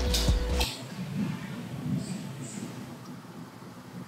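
Eggs being cracked and separated by hand over a glass bowl. A couple of sharp taps of shell come near the start, then faint small sounds of shell and egg handling.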